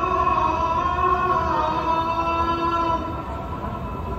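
A muezzin's voice calling the Maghrib adhan over the mosque's loudspeakers: one long held, ornamented note that wavers in pitch early on and ends about three seconds in.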